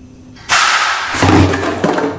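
A sudden loud thud about half a second in, followed by about a second and a half of loud noise before it fades.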